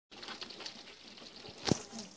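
Dozens of small crabs scrabbling about in a plastic bucket, their legs and shells making a patter of small clicks, with one sharp knock near the end.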